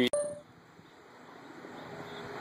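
Faint steady outdoor background noise that slowly grows louder, following an abrupt edit cut just after the start, with a brief short tone right after the cut.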